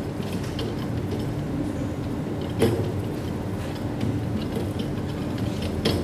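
Chaotic double pendulum swinging and spinning on its pivot bearings, a steady mechanical running noise, with one sharp knock about two and a half seconds in.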